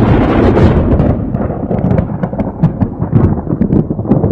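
Loud low rumble that breaks up into irregular crackles from about a second and a half in.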